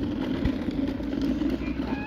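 A child's ride-on toy car moving along an asphalt path, giving a steady rumble from its wheels and drive.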